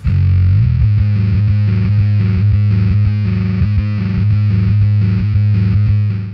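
Electric bass played through a Sinelabs Basstard fuzz pedal, heavily distorted. It plays a riff that holds a low note, broken by short repeated breaks in a steady rhythm.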